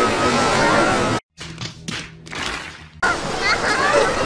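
Ice skate blades scraping and hissing on a rink, with children's voices. About a second in, the sound cuts out abruptly to near silence and stays faint until it comes back near the end, the break of an edit.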